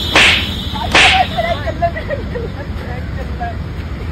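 Two sharp swishes about a second apart, like a whip or a stick cutting the air, followed by a fainter wavering, falling tone.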